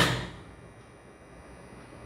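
A single sharp knock of the metal jockey being pressed down onto the potentiometer wire, ringing away within about half a second, then faint room noise.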